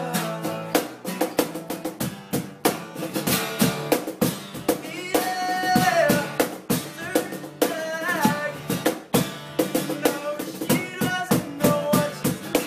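Acoustic band performance: a steel-string acoustic guitar strummed, a cajón slapped by hand in a quick steady beat, and young male voices singing.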